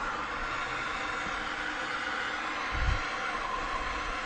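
MAPP gas blowtorch burning with a steady hiss, with one brief low bump about three seconds in.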